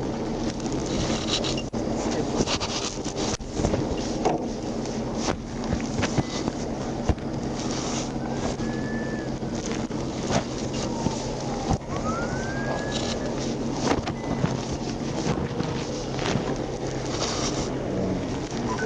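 Wind noise and rustling on a trooper's wireless microphone, with scattered clicks and knocks over a steady low hum.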